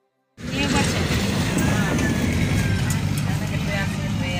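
Outdoor sound cutting in suddenly about a third of a second in: a loud, steady low rumble with people's voices over it.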